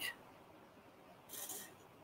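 A paintbrush dabbing paint onto the surface: one short, soft brushing hiss about one and a half seconds in, otherwise near silence.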